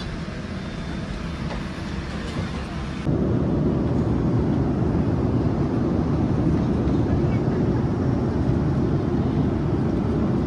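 Airliner cabin noise in flight: a steady rumble of engines and airflow. It jumps abruptly louder about three seconds in and then holds steady.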